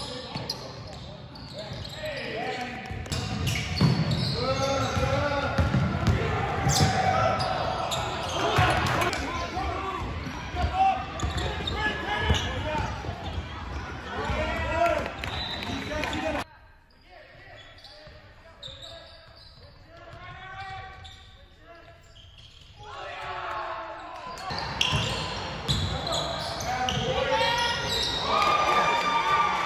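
Basketball game sounds: a ball bouncing on a hardwood court, with players' voices. The level drops sharply about halfway through and comes back up a few seconds before the end.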